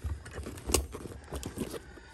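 Hand rummaging in a canvas tool bag, metal hand tools clinking and knocking against each other as a pair of pliers is pulled out, with one sharper clink under a second in.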